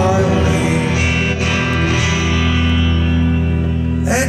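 Live band music led by electric guitar in a slow passage, a chord held and ringing from about a second in.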